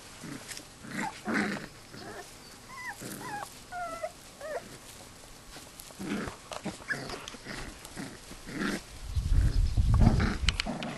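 Australian kelpie puppies vocalising at play: short growls and a few high, wavering whines about three to four and a half seconds in. A loud low rumble comes near the end.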